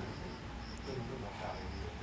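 Insect chirping in a steady run of short, high pulses, over a low background rumble.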